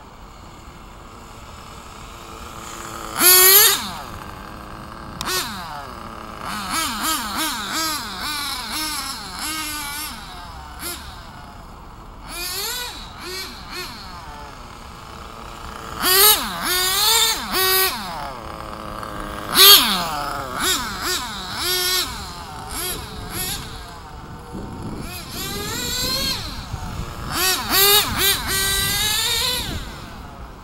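Kyosho GT2 radio-controlled car driven up and down the street, its motor revving with pitch rising and falling. It is loudest in a few close passes: a few seconds in, around the middle and near the end.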